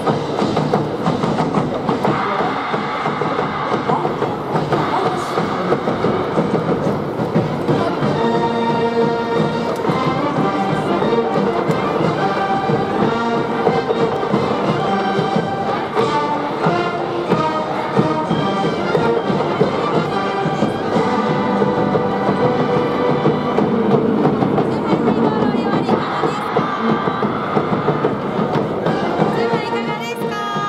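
A large high-school brass band with sousaphones playing a loud baseball cheering tune in the stands, a sustained horn melody standing out from about eight seconds in.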